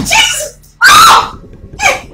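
A person screaming in three loud, high-pitched bursts, the loudest about a second in.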